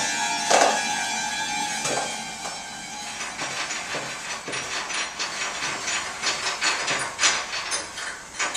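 Free-improvised music: a held note fades out over the first two seconds, cut by two sharp struck accents. It then thins into irregular clicks, taps and scrapes from small hand percussion.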